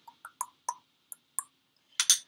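A metal spoon clicking lightly against a paint container as red craft paint is scooped out, about five small taps over two seconds and a sharper one at the end.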